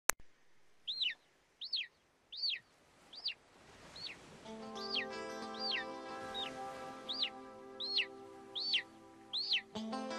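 A sharp click at the very start, then a bird's chirp repeated steadily about every three-quarters of a second, each a quick high note sweeping downward. About halfway through, music with long held notes comes in beneath the chirps.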